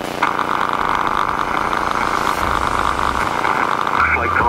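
HF radio receiver static: a steady hiss that switches on abruptly about a quarter second in, over the steady drone of the Beechcraft Bonanza's piston engine.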